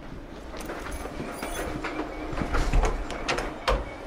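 Footsteps and a string of small clicks and knocks as a person walks through an empty room; near the end a closet door latch clicks and the door is pulled open.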